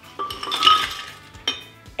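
Ice cubes tipped from a bowl into a blender jar, clattering and clinking against the jar for about a second, then a single sharp clink.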